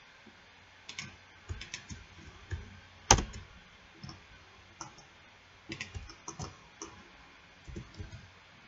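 Computer keyboard keys and mouse buttons clicking in scattered short bursts as Blender shortcuts are entered, with one louder, sharper knock about three seconds in.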